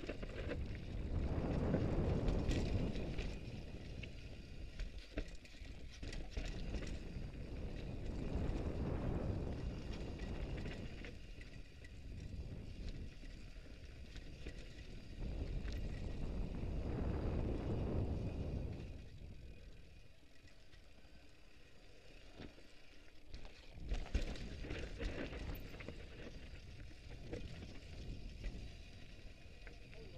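Mountain bike rolling fast down a rocky dirt trail: wind rumbling over the microphone in swells that rise and fall with speed, over the crunch of tyres on gravel and the rattle of the bike. One sharp knock about two-thirds of the way through.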